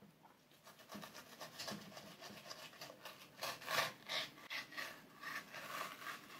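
Faint, irregular scraping strokes of a knife blade drawn between a sea bream fillet's skin and flesh against a plastic cutting board as the skin is taken off, growing a little louder in the second half.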